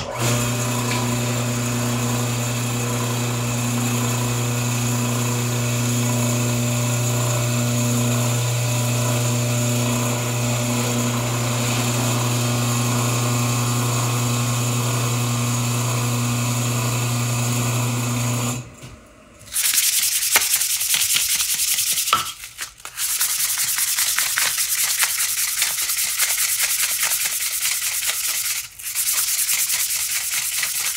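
Drill press motor running with a steady hum while drilling a wooden mallet head; it cuts off after about 18 seconds. Then sandpaper is rubbed back and forth by hand along a turned wooden mallet handle.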